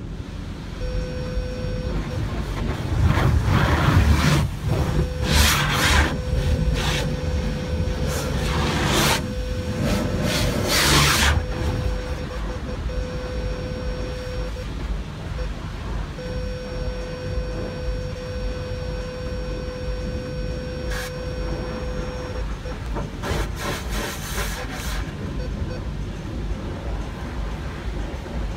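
High-pressure washer jets spraying a car, in loud hissing bursts mostly in the first half and again near the end, over a constant low rumble in the wash bay. A steady whine runs under it and breaks off a few times.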